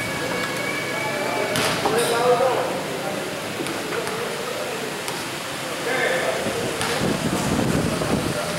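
Spectators' voices chattering and calling out at a basketball game, with a few sharp knocks.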